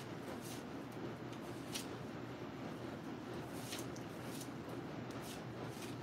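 Soft rustle of paper banknotes as US one-dollar bills are leafed through by hand, with a few crisp flicks of individual notes, the clearest a little under two seconds in. A steady low hum runs underneath.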